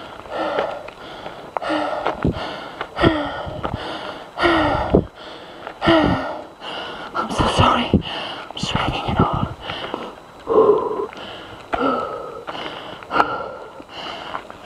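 A person breathing hard from climbing uphill under a heavy load: a breath about every second and a half, each with a short falling voiced sigh on the way out.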